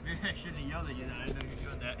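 Indistinct, distant voices talking, over a low rumble of wind on the microphone.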